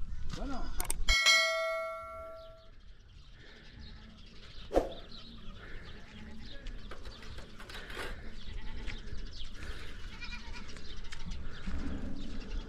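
A farm animal bleating: one held, steady-pitched call about a second in that fades over a second or so, followed by fainter scattered animal and outdoor sounds.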